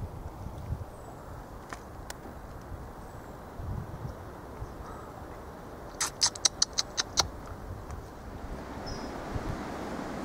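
Quiet outdoor background with a steady low rumble and a few faint high chirps. About six seconds in there is a quick run of about eight sharp clicks over roughly a second.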